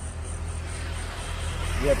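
A road vehicle passing, its noise swelling gradually over the second half, over a steady low hum.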